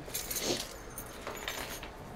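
A bunch of metal keys jangling as they are handled, in two short jingles about a second apart.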